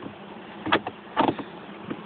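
Honeybees buzzing steadily around a hive, with a few short knocks and scrapes of the hive being handled and opened: one about three quarters of a second in, a cluster just after a second, and one near the end.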